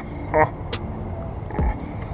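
A short burst of a woman's laughter about half a second in, over a steady low outdoor rumble, with a few faint clicks and a soft low thump near the end.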